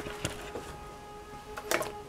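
Chinese bamboo flute playing one long held note, moderately quiet, with a sharp click at the start.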